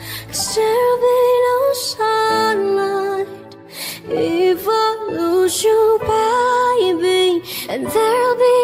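Pop song playing: a female vocal melody with no clear words over soft synth backing and light percussion. The mix briefly drops away about halfway through, then comes back.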